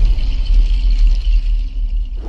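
Loud, deep rumble from the sound design of an animated logo intro, with a faint hiss above it, easing slightly near the end.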